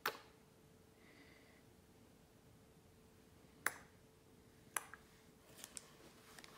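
Quiet room with a faint steady hum, broken by a few short sharp clicks: one at the start, one about three and a half seconds in, another near five seconds, and a quick little cluster just before the end.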